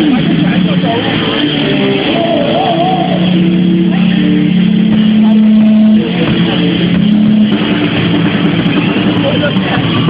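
Live rock band playing loudly, with long held notes, one of them wavering with vibrato, over a dense, distorted band sound.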